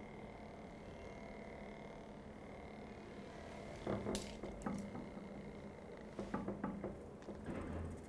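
Faint steady whine of a small DC motor spinning a CD on its shaft. About four seconds in come light clicks and knocks as the disc is caught and handled, with a few more soft knocks near the end.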